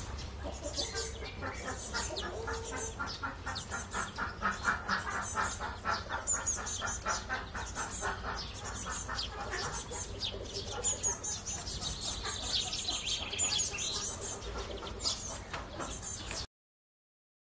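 Small songbirds, house sparrows and greenfinches at a seed feeder, chirping and twittering in many short high calls, with domestic hens clucking in the background.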